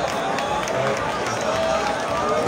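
Crowd noise: many people's voices calling out and talking over one another at once, with no single voice standing out.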